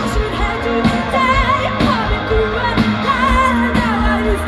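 Live pop band playing loudly through a festival PA, heard from among the crowd: singing over electric guitars, keyboards, bass and a steady drum beat.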